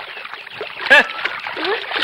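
River water splashing and sloshing around a coracle in shallow water, as a basket of fish is flung and tipped out near the end. A short shout cuts in about a second in.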